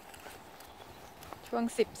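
Faint footsteps on brick paving during a walk with a leashed dog, followed by a woman's voice near the end.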